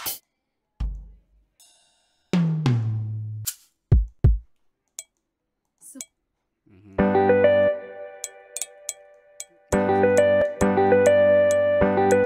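Drum one-shot samples auditioned one at a time in a DAW: a cymbal crash, a low hit, a falling tom-like tone, two kick-like thumps and small hi-hat ticks. From about seven seconds an electric-piano chord loop plays with a ticking percussion pattern over it; it stops briefly and starts again near ten seconds.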